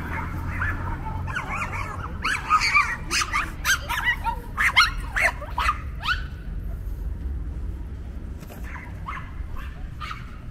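A dog barking in a fast run of short, sharp barks, about three a second, from about two seconds in to about six seconds in, then a few fainter yaps.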